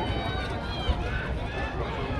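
Several voices talking at once, no clear words, over a steady low rumble, with one short low knock about a second in.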